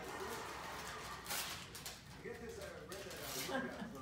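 Tissue paper rustling and crinkling as a gift is unwrapped, with a sharper crackle about a second in, then soft voices talking over it in the second half.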